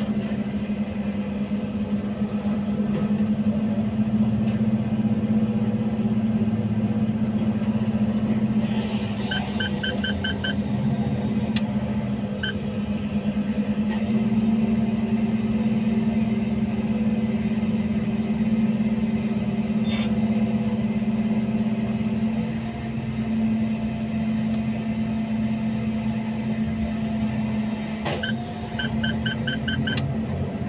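A crane's engine running steadily, heard from inside its cab, as a constant low hum. Two short runs of about five rapid electronic beeps sound, about nine seconds in and again near the end.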